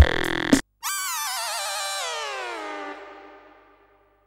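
Electronic background music with a beat cuts off abruptly, then a single wavering synthesizer tone starts high and glides slowly downward, fading out before the end: a transition sting into a title card.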